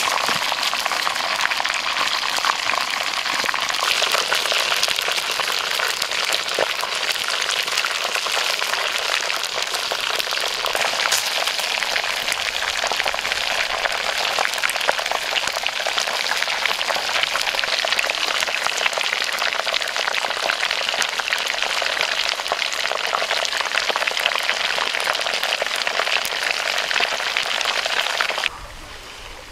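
Whole fish frying in hot oil in a pan: a steady sizzle thick with fine spitting crackles.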